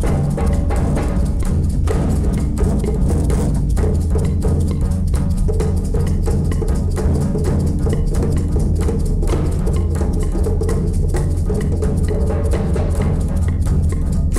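Instrumental passage of a song: a dense, steady rhythm of found-object percussion over a strong, sustained low bass, with no singing.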